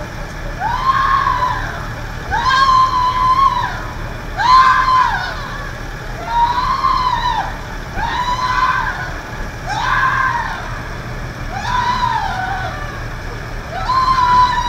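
A person wailing in distress: long rising-and-falling cries, one about every two seconds.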